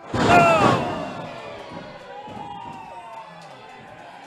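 A sudden impact of a wrestler's body hitting the ring mat, with the crowd shouting out at once. The shouting dies away over about a second.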